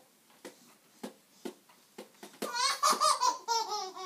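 A string of light knocks, about two a second, then a baby laughing in short bursts through the second half.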